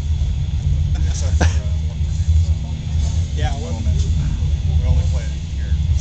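Steady low rumble, with faint voices talking in the background a few seconds in.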